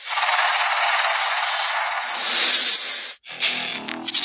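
A steady burst of hiss-like noise for about three seconds that cuts off suddenly, followed near the end by electric guitar music starting up.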